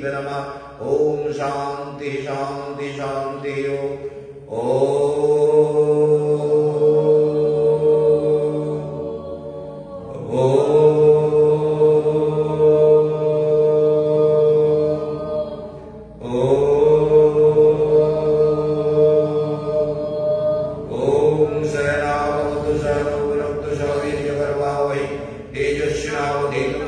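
A man chanting a mantra: short chanted syllables at first, then three long held notes of five to six seconds each, then quicker syllables again near the end.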